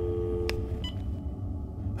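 Telephone dial tone, the two-note hum of a line left open after a call ends. It stops a little under a second in, with a click about halfway through it, over a steady low hum.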